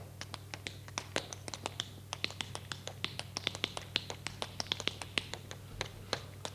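Tap shoes tapping out an unaccompanied tap-dance step: a quick, rhythmic run of sharp taps, several a second.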